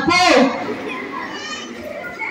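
A loud, drawn-out voice breaks off with a falling pitch in the first half-second, followed by a quieter jumble of children's voices chattering in a large hall.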